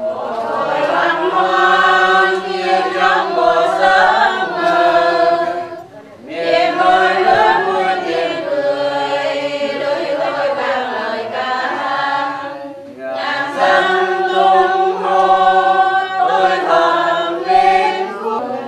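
A group of mourners singing a Catholic prayer together in unison, without instruments, in long phrases with short breaks about six and thirteen seconds in.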